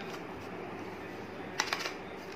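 Small cardboard box being handled and its lid flipped open. It gives a quick cluster of about three sharp clicks near the end, over a steady background hiss.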